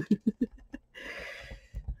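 A woman's laugh trailing off in a few short chuckles, then a soft papery rustle of washi tape being pressed along a journal page, with a few light low taps near the end.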